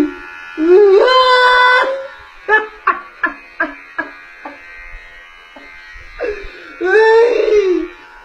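A young man wailing and crying in a high, strained voice: a long drawn-out wail, then a run of short sobbing yelps, then another wavering wail near the end.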